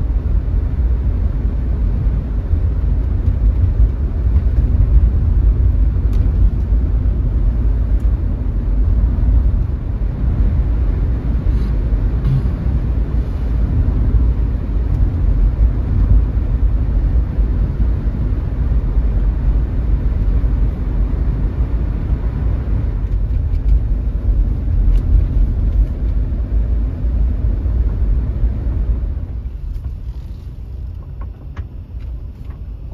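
Steady low road and engine rumble heard inside a car's cabin while driving, with tyre noise on a wet road. It drops away just before the end.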